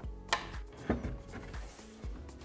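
Background music with two sharp knocks about half a second apart, from glue bottle and wooden crib parts being set down on a wooden workbench.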